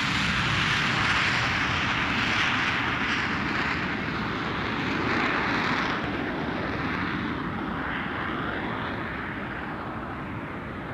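Jet aircraft engine noise: a steady rushing roar, loudest over the first half and slowly fading over the second.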